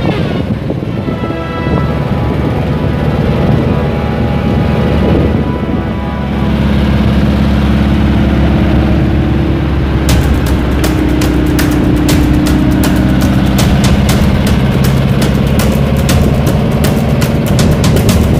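Background music over the steady running of a car engine and road noise, with many sharp clicks in the second half.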